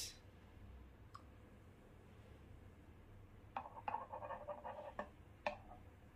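Faint clicks and scraping as a stainless steel milk jug and a ceramic cup are handled together while steamed milk is poured for a latte, with a cluster of small sounds about three and a half seconds in and a sharp click near the end.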